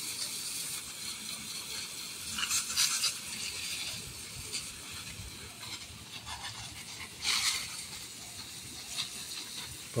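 Water spraying from a garden-hose spray nozzle onto trays of wet sphagnum moss: a steady hiss that swells briefly twice, about three seconds in and again about seven seconds in.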